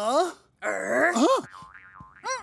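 Cartoon sound effects: springy boings whose pitch sweeps up and then falls, mixed with wordless cartoon voice noises, as animated letters hop together, then a short warbling tone near the end.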